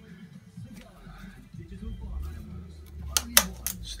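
A low hum sets in about a second in, then a quick run of clicks near the end as the push-buttons on a Harrison M300 lathe's control panel are pressed.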